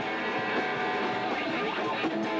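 Live rock band playing, led by a distorted electric guitar holding notes and bending them up and down about halfway through.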